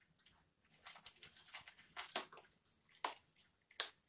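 Thin Bible pages being leafed through: a scatter of faint, short, crisp rustles and ticks while the verse is looked up.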